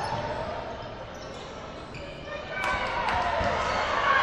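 Basketball bouncing on a hardwood court during live play, with voices from players and spectators echoing in a large gym.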